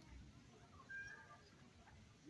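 Near silence outdoors, with one brief, faint high-pitched call about a second in.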